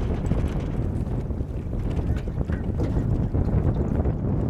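Wind buffeting an outdoor microphone: a steady, low, fluctuating rumble.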